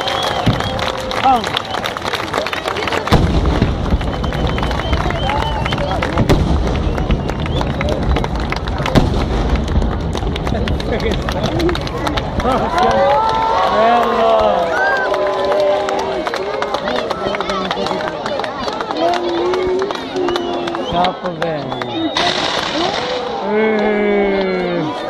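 Fireworks going off in a run of sharp bangs and crackles, with a deep rumble from about three to ten seconds in. Near the end comes a loud hiss as the spark fountains on a mock-castle set piece flare up.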